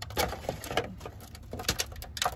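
Hands working a moist root ball of tomato seedlings in potting mix, the soil crackling and crumbling in a string of small irregular clicks.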